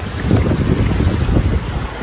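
Shallow beach surf washing and swirling close to the microphone, under heavy wind buffeting on the microphone.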